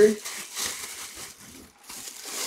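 Plastic wrapping crinkling and rustling as a full-size football helmet is unwrapped from its packaging, fading out near the end. A man's voice trails off at the start.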